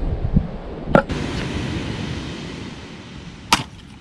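Two sharp knocks of an axe striking a firewood log, one about a second in and a louder one near the end, over a steady hiss.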